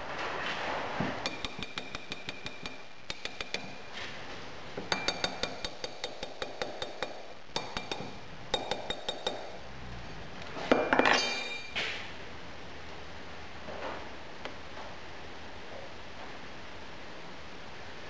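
A steel rapping bar striking a metal rod set into a wooden pattern in a sand mould: bursts of quick, light metallic clinks with a ringing tone, which loosen the pattern from the sand so it can be drawn. A louder, longer noise comes about eleven seconds in.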